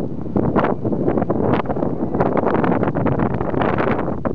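Wind buffeting the camera's microphone: a loud, uneven rumble that swells with each gust.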